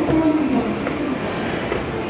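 Escalator running: a steady mechanical rumble with light clicking from the moving steps. A recorded voice announcement of the kind Japanese escalators play is heard over it, most clearly at the start.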